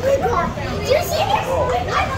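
Children's voices, with chatter and calls from kids milling around, over a steady low background hum.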